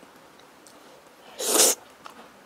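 A person slurping a mouthful of sauce-coated noodles: one short, loud slurp about a second and a half in, after a quiet pause.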